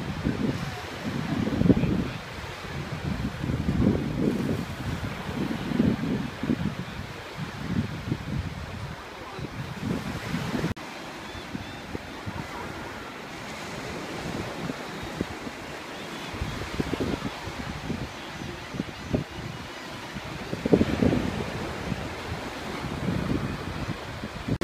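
Small Gulf of Mexico waves washing onto a flat sandy beach, with wind buffeting the microphone in irregular gusts.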